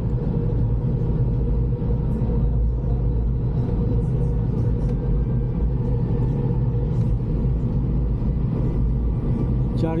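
Steady, loud low drone of a fast ferry's engines heard inside the passenger cabin, a constant hum with rumble and no change in pitch.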